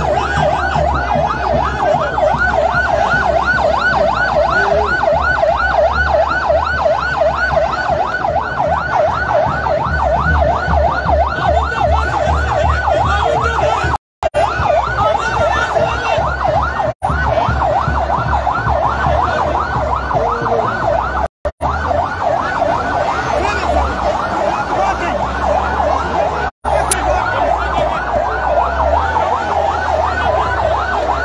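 Convoy vehicle sirens in a fast yelp, the pitch sweeping up and down several times a second without let-up, over a low rumble. The sound cuts out abruptly and briefly four times.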